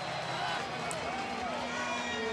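A faint background sound bed: a low steady hum with a few held tones and soft wavering tones over it.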